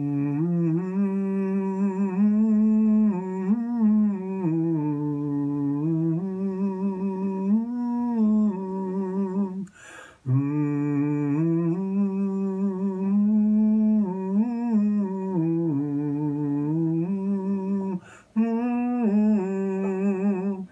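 A man humming a slow wordless melody in long held notes, pausing for breath about halfway through and again near the end.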